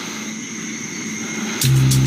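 A steady low hiss of background ambience under a drama scene. About one and a half seconds in, music begins: a deep sustained bass note with sharp high ticks over it.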